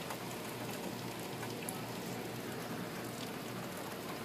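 Steady rain coming down hard, an even hiss with a few faint ticks of drops.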